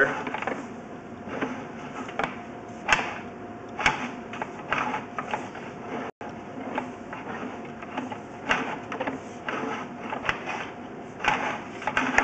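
Sewer inspection camera's push cable being fed down the line: irregular clicks and knocks, roughly one or two a second, over a faint steady hum.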